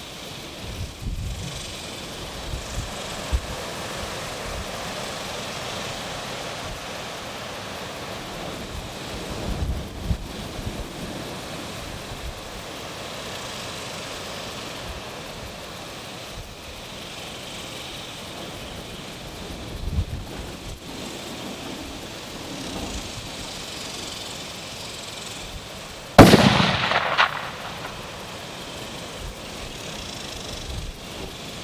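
A single shot from a Howa 1500 bolt-action rifle in 6.5 Creedmoor near the end, loud and sharp, its report rolling away over about a second. Before it, wind buffets the microphone in low, uneven rumbles.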